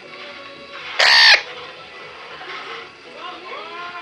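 Female eclectus parrot giving one loud, harsh squawk about a second in, then softer rising-and-falling calls near the end, in what the owner asks might be begging behaviour.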